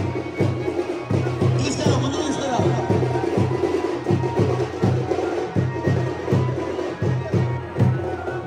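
Teenmaar music: a fast, steady drum beat of about three strokes a second, with crowd voices over it.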